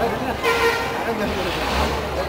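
A short vehicle horn toot about half a second in, over the low rumble of passing road traffic and people's voices.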